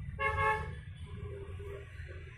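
A single short horn toot, one steady tone about half a second long, starting a fraction of a second in, over a steady low rumble; a fainter tone follows briefly about a second later.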